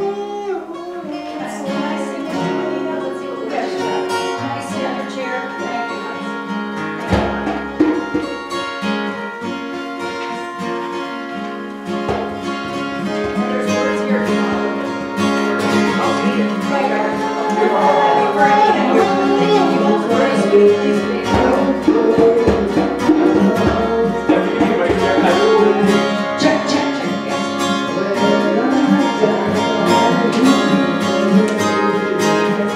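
Live acoustic music: an acoustic guitar playing along with other sustained instruments and voices, growing louder about halfway through.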